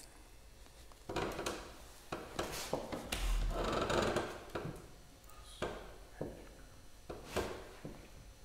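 Footsteps and rustling on a wooden stage floor: a few irregular knocks, with a longer rustle about three seconds in.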